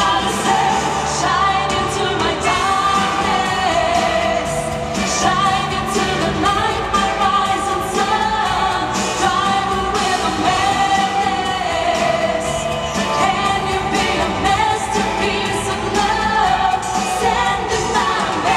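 Two female singers performing a pop ballad live into handheld microphones over a backing track, heard through the sound system of a large hall.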